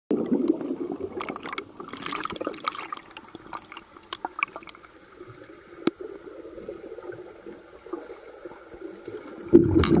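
Water heard from underwater: muffled bubbling with crackles and pops from a cloud of bubbles for the first few seconds, then a quieter stretch with scattered clicks as swimmers kick nearby. Near the end the sound jumps suddenly louder.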